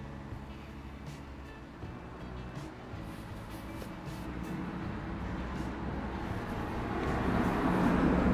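Outdoor road traffic rumbling in the background, growing steadily louder over the last few seconds as a vehicle approaches.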